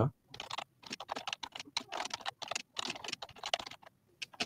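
Rapid typing on a computer keyboard: quick runs of key clicks, several a second, with short pauses between words.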